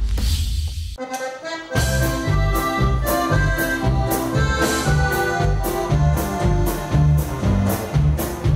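Norteño band playing live: a button accordion leads over electric bass, guitar and drums with a steady beat. The band comes in fully about two seconds in, after a fading intro sound and a short accordion run.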